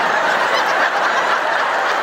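A large theatre audience laughing loudly and steadily in one sustained wave after a punchline.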